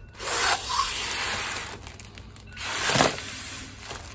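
Breath blown hard through the mouthpiece into a foil breath-sample bag for a Helicobacter pylori breath test, with the foil crinkling as the bag fills. A long rushing blow is followed by a second one that swells to its loudest about three seconds in.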